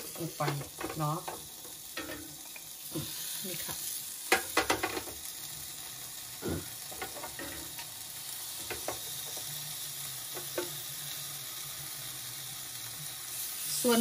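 Electric raclette grill sizzling steadily as slices of raclette cheese heat in its small pans under the element. A few light clicks of the pans being handled come about four seconds in.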